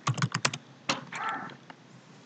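Computer keyboard being typed on: a quick run of keystroke clicks, then a few single keystrokes spaced out.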